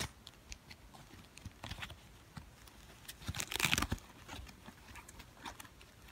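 Thin foam wrapping sheet and plastic packaging rustling and crinkling as they are unwrapped by hand, with scattered small crackles and a louder burst of crinkling about three and a half seconds in.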